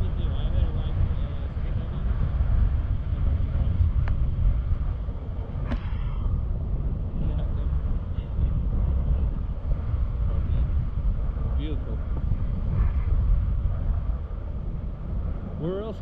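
Rushing airflow buffeting the camera microphone of a tandem paraglider in flight: a steady low rumble that swells and eases.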